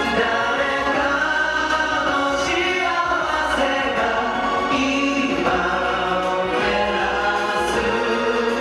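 A male vocal group sings in unison, with long held notes, over a live orchestral accompaniment of strings and piano.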